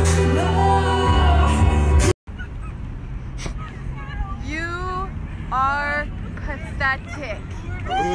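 Live concert music with heavy bass over a large sound system, cut off abruptly about two seconds in. After that, several high-pitched whoops and squeals from young people come in short bursts over a low background hum.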